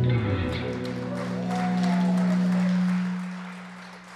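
Electric rock band's final chord ringing out after the last hit, a single low note sustaining and then fading away about three seconds in, with scattered applause from the audience.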